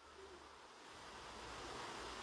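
Quiet pause: faint steady hiss of room noise with a low hum, growing a little louder about a second in.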